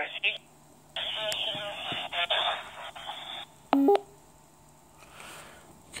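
Another radio amateur's voice received as DMR digital voice and played through a tablet's small speaker: thin and tinny, lasting about two and a half seconds. A short two-tone electronic beep follows a little later.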